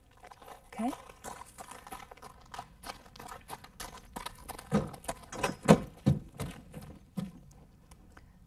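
Horse's hooves crunching on gravel as it is led, then heavier hoof steps onto the rubber-matted deck of a portable weighbridge, the loudest about five to six seconds in.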